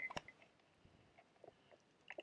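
Near silence, broken by a sharp click at the very start and a few faint taps.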